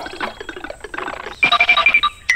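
Cartoon sound effects: a fast run of ratchet-like clicking, then a quick string of short high beeps about a second and a half in.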